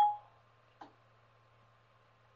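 Short electronic chime from the iPad's dictation feature, a clear tone that dies away within about a third of a second as dictation stops listening. A faint click follows under a second in, then only a faint low hum.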